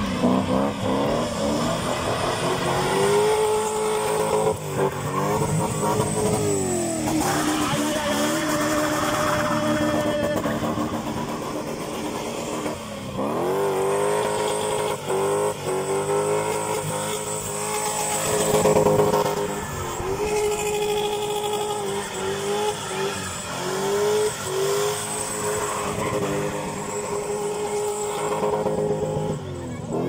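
Car spinning doughnuts on tar: the engine is revved hard and held high for several seconds at a time, dipping and climbing again, over the noise of the spinning tyres.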